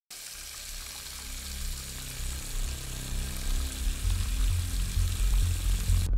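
Tap water running in a steady stream into a ceramic washbasin, under low electronic bass notes that swell louder in the second half. The water sound stops abruptly at the very end.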